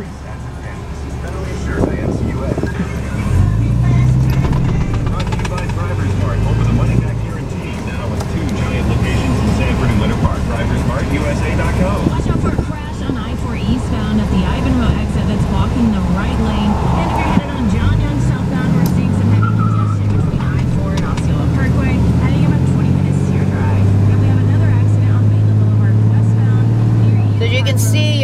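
Dodge Ram 3500 diesel pickup heard from inside the cab while driving, the engine's low drone changing in level and pitch several times as the truck picks up speed, then running steadily near the end.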